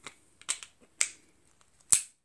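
Four sharp metallic clicks from a Ruger Blackhawk .357 Magnum single-action revolver as its cylinder is put back into the frame and turned, about half a second apart, the last the loudest.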